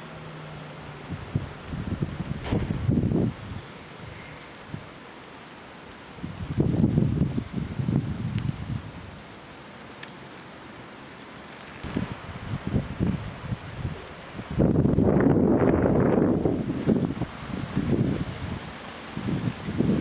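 Wind buffeting the camera microphone in uneven gusts of a second or two, over a faint steady outdoor hiss; the longest and loudest gust comes about two-thirds of the way in.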